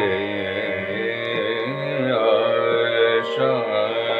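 A male Hindustani classical voice sings a slow khayal phrase in Raag Bihag, holding and gliding between notes over a steady drone.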